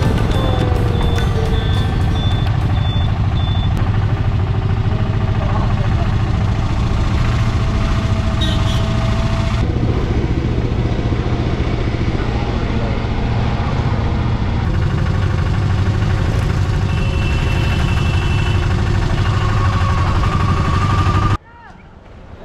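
A shared tuk tuk's engine running steadily with road noise, heard from inside its open cabin; it cuts off suddenly near the end.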